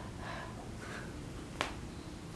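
A single sharp kiss smack on a baby's cheek about a second and a half in, over faint soft breaths.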